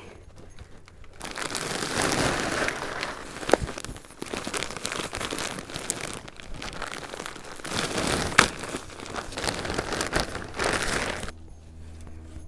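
Plastic bag of raised bed soil mix crinkling and rustling as the soil is tipped out and worked in the planter, with a few sharp crackles. It starts about a second in and stops just before the end.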